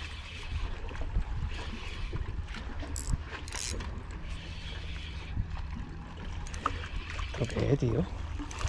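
Wind buffeting the microphone over a spinning reel being cranked as a hooked fish is played in.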